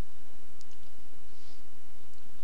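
A couple of faint computer mouse clicks over a steady low hum.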